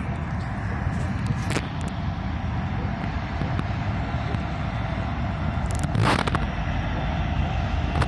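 Diesel freight locomotives running as they haul a train across an overpass, a steady low rumble, with two brief sharp cracks, one about a second and a half in and one around six seconds.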